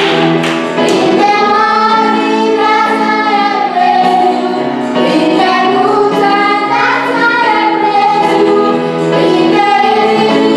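A woman and children singing a worship song together, the voices held and gliding through the melody without a break.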